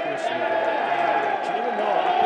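Stadium crowd cheering after a goal, many voices blending into a steady roar.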